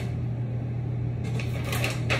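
A steady low mechanical hum, with a paper leaflet rustling in the second half as it is handled.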